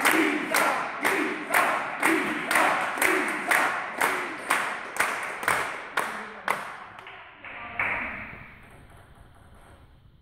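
Spectators clapping in unison, about two claps a second, echoing in a sports hall and dying away after about seven seconds. One last short burst of noise follows just before eight seconds.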